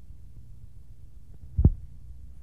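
A low steady hum with a single dull thump about one and a half seconds in.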